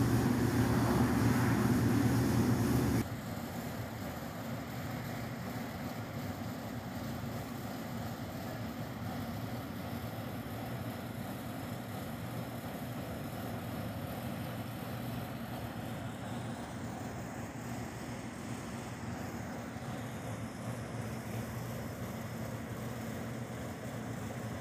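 A steady mechanical hum with a rushing noise, which drops off abruptly about three seconds in. After that only a quieter, even background hum remains.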